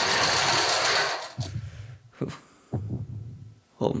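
Action sound effects from an animated episode's soundtrack: a loud rushing blast for about a second and a half, then four deep thuds spaced irregularly, the last one under a single spoken word.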